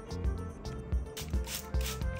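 Background music with a steady beat, with a few short hissing squirts from a hand trigger spray bottle in the second half, as water is sprayed onto a silicone-coated wooden block.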